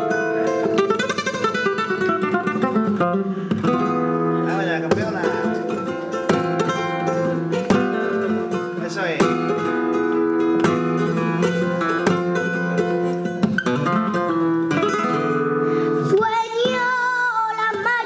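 Flamenco guitar playing, with plucked melodic runs and sharp strummed chords. Near the end a woman's voice comes in, singing a wavering, ornamented flamenco line.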